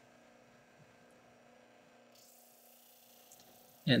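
Near silence with a faint steady hum, and a little added hiss from about halfway through.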